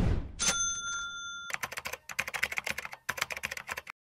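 End-card transition sound effects: a quick falling whoosh, then a bell-like ding that rings for about a second, then about two seconds of rapid typing-like clicks that cut off suddenly near the end.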